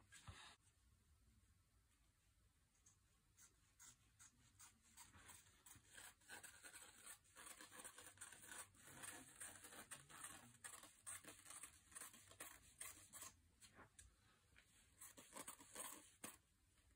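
Scissors cutting through fabric: faint, irregular snipping and scraping strokes with rustling of the cloth, starting a few seconds in and going on steadily.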